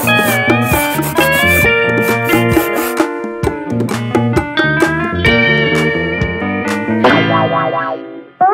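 Upbeat instrumental music with guitar and a drum beat, stopping just before the end.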